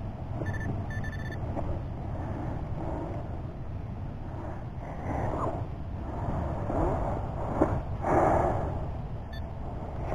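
A handheld metal-detecting pinpointer beeps twice in quick succession near the start and once more, briefly, near the end, signalling a coin-sized target close by in the dug hole. In between, hands rustle through wet soil and grass, loudest about eight seconds in, over a steady low rumble.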